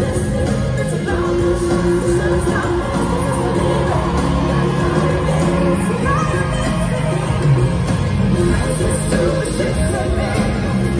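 Live pop concert music with singing, heard loud and steady from the audience in a large arena.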